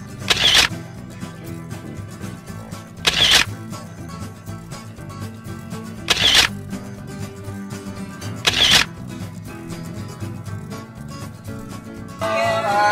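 Background music with a camera shutter sound effect clicking four times, every two to three seconds.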